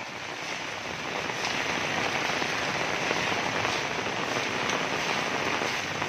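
Heavy rain falling on a brick-paved lane and the houses around it: a dense, steady patter with a few sharper drop ticks, growing a little louder about a second in.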